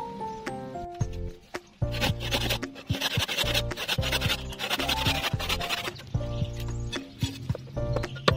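Rasping back-and-forth strokes of a handsaw cutting across a small wooden block, from about two seconds in until about six seconds. Instrumental music with a stepping melody and bass plays throughout.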